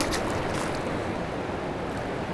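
Fast river current rushing steadily past a rocky bank.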